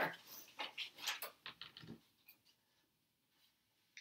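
Faint rustling and soft taps of printed paper pattern sheets being handled, in short strokes that stop about two seconds in.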